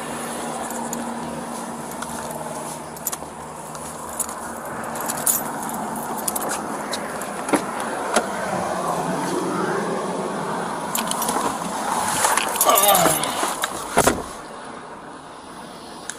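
Outdoor traffic noise with scattered clicks and rattles as a Chevrolet police SUV's driver door is opened, then the door shuts with one sharp slam near the end, and the sound turns quieter and closed-in inside the cab.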